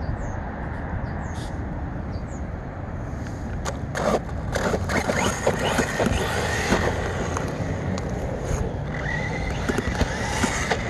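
Electric RC monster truck (Redcat Earthquake 8E) driving across asphalt. From about four seconds in, its motor whine rises and falls with the throttle over a steady low rumble.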